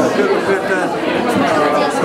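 Speech over the chatter of a crowd of people talking.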